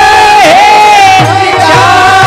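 A Warkari bhajan chorus of men and boys singing a long held note loudly in unison, with a brief dip in pitch about half a second in, to hand cymbals (taal). A drum joins just past the middle, beating about twice a second.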